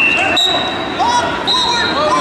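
Wrestling shoes squeaking on the mat: a thump about half a second in, then two high, steady squeaks of about half a second each, with voices around the mat.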